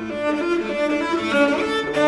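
Cello played with the bow: a passage of changing notes that come faster in the second half.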